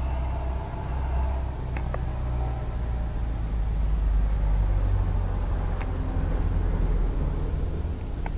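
A domestic cat purring close to the microphone: a low, steady rumble that gets louder around the middle, with a few faint clicks.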